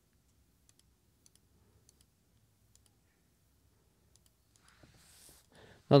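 Faint, irregular computer mouse clicks, about ten of them spread unevenly, in an otherwise quiet room.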